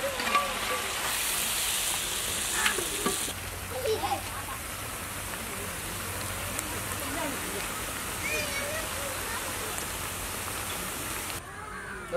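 Chicken pieces in masala sizzling in a large metal pot, stirred with a long metal ladle that knocks and scrapes against the pot a few times in the first four seconds. The high hiss drops about three seconds in, leaving a softer, steady sizzle.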